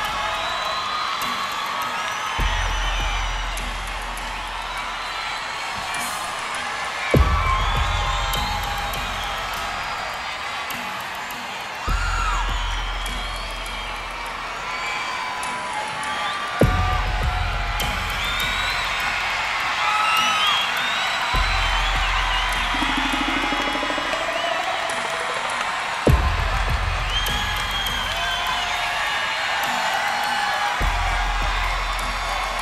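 Live concert sound: a slow backing track of deep, held bass notes that change every few seconds, with a sharp hit at several of the changes, under a crowd cheering and screaming.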